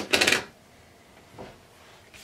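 A sharp click and a brief clatter of small hard crafting tools being put down on the work surface, then a faint soft brush about a second and a half in as hands settle on the paper card panel.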